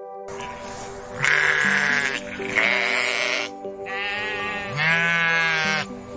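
Sheep bleating four times over soft background music: the first two calls rough and harsh, the last two with a wavering quaver.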